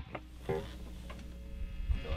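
Low steady hum from a 1960s blackface Fender Bassman amp head between notes, after a distorted electric guitar chord cuts off at the start, with a faint string sound about half a second in.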